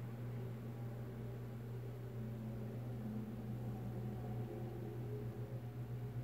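A steady low hum under a faint even hiss, with no distinct snips or impacts standing out.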